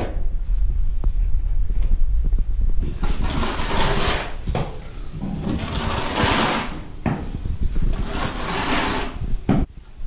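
A long-handled tool scraping across a concrete floor in several long strokes, each a second or more, after a low rumble in the first few seconds.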